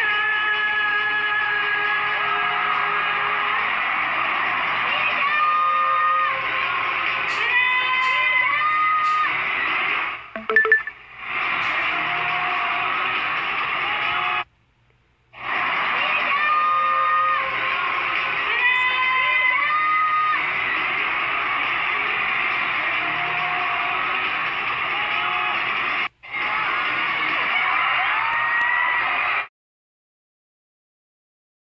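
Live arena concert sound: music and amplified voices over a crowd of fans, heard through a phone recording from the audience. It drops out twice, once for about a second, and stops abruptly near the end.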